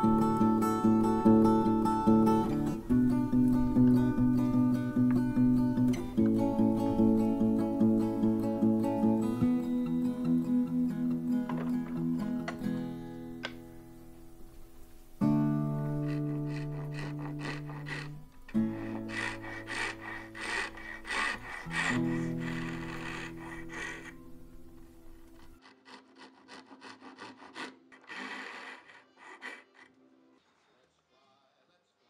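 Gentle acoustic guitar music with sustained chords, fading away over the second half. About halfway through, quick rasping strokes of a hand saw cutting a small length of wood come in, and carry on briefly after the music has died down.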